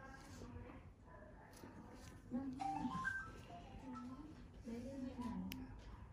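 Quiet, low voices talking in the background, with a faint click near the end.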